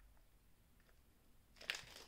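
Mostly near silence, with a short crinkle of a plastic wrapper being handled near the end.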